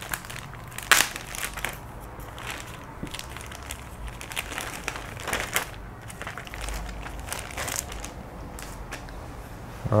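Clear plastic bag crinkling and crackling as a plastic kit sprue is slid out of it, with irregular sharp crackles throughout and the loudest about a second in.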